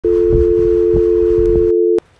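Loud, steady two-note electronic test tone of the kind laid over TV colour bars, with a crackly static hiss beneath it; the hiss stops about three-quarters of the way through while the tone holds on.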